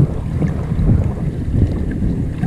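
Wind buffeting the microphone as a steady deep rumble, with choppy shallow seawater lapping.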